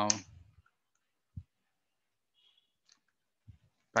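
Computer keyboard and mouse clicks: a few faint, scattered clicks and one short low knock about a second and a half in, with near silence between them, as a SQL statement is entered in the editor.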